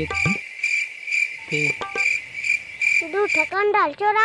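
Cricket chirping: a steady, even series of short high chirps, about two and a half a second, that begins abruptly and stops about three and a half seconds in.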